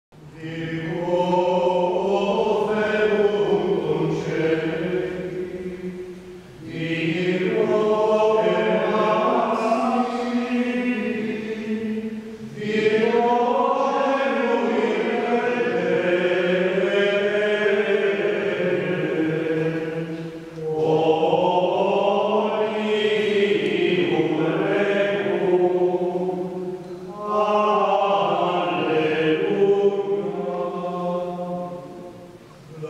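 Men's voices singing Ambrosian chant in Latin, in unison, in five long phrases with a short breath between each.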